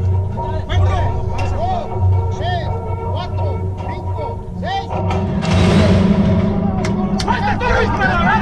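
Background music and voices, then a little after five seconds in a burst of clattering noise lasting about a second as the horse-racing starting gate springs open and the horse breaks out, followed by a few sharp knocks.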